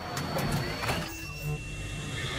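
Electronic sound design of an animated logo intro: sharp clicks and whooshes over a deep bass, with thin, steady high tones.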